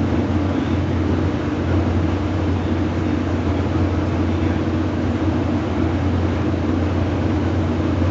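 Steady cabin noise of a moving passenger vehicle: a constant low drone with an even rushing hiss over it.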